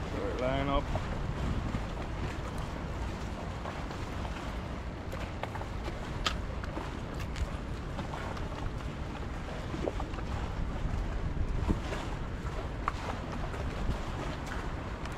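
Steady low rumble of wind on the microphone. A short voice-like sound comes about half a second in, and a few light clicks follow, one sharper near the middle.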